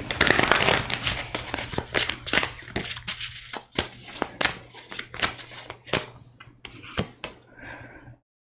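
A deck of tarot cards being shuffled by hand: a dense run of quick card clicks and flicks that thins out toward the end.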